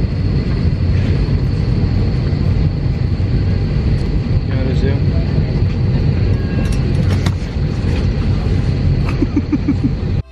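Steady low rumble of an airliner cabin, with a faint high steady tone running through it and faint voices in the background.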